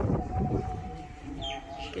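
Outdoor rural ambience with a few faint bird chirps late on, a brief low rumble at the start, and a faint steady tone underneath.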